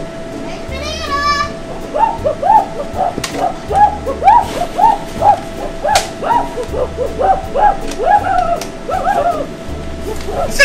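A person in a gorilla costume imitating a gorilla with rapid, repeated hooting "ooh-ooh" calls, several a second, over background music with a steady low bass.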